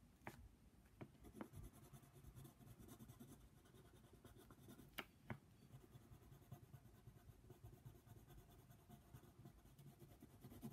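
Yellow coloured pencil scratching faintly on paper as it shades in a colouring book, with a few sharp ticks, the strongest about five seconds in.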